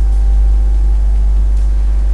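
A loud, steady low hum with faint higher overtones under a light hiss, running on unchanged during a pause in speech.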